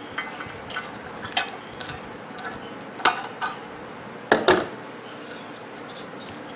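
Wire cutters snipping the coiled terminal wires of a microwave-oven magnetron, with scattered sharp metallic clicks and clinks as the tool and metal parts are handled. The loudest clack comes about four seconds in.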